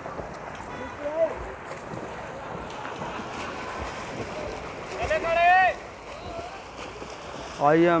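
Swimmers splashing in a pool amid poolside crowd noise, with wind on the microphone. About five seconds in, one spectator gives a single high, rising shout.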